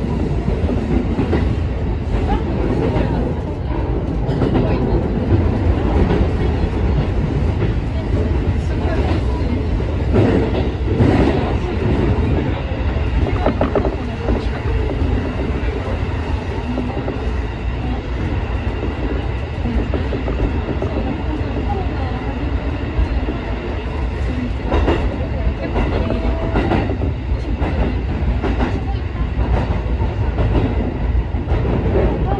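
Ome Line electric train running at speed through tunnels, heard from inside the front car. There is a steady low rumble of wheels on rail, with scattered sharp wheel clicks over the track.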